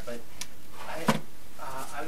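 A single sharp knock about a second in, with brief low talk around it in a room.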